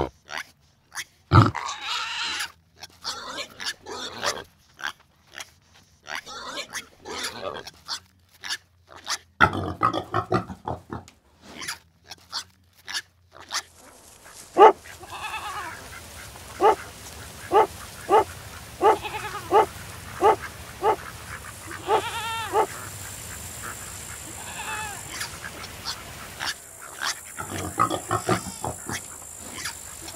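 Pigs grunting and squealing in irregular bursts. About halfway in, a dog barks about a dozen times at an even pace, the last bark drawn out. Near the end, pigs grunting again.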